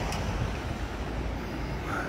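Steady low rumble of outdoor street noise, like traffic on a nearby road.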